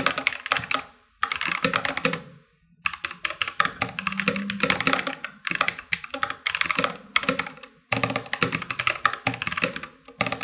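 Rapid typing on a computer keyboard: quick bursts of keystrokes broken by a few short pauses.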